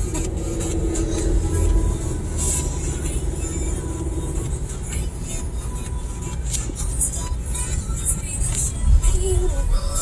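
Steady low rumble of tyres and engine inside a moving car's cabin, with music playing.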